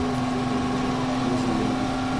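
A steady, even mechanical hum with one constant low tone.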